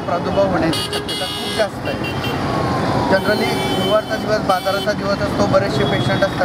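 A man talking close to a microphone on a street, with traffic noise behind him and short vehicle-horn toots about a second in and again around three seconds in.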